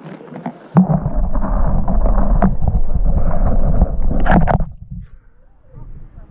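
A sudden knock about a second in, then about four seconds of loud rumbling, crackling handling noise from the phone being jostled and rubbed right at its microphone, cutting off abruptly near the end.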